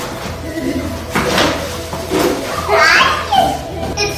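Children's voices and play noise over steady background music.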